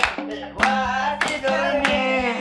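A voice singing a melody over strokes of a hand drum and hand clapping, with a steady low tone beneath, in an even rhythm.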